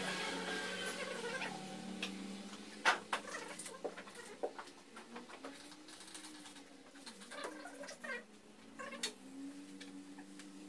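Scattered sharp clicks and taps of hands and tools working on a glass aquarium, the loudest about three seconds in, over a steady low hum and a faint tone that wavers up and down in pitch.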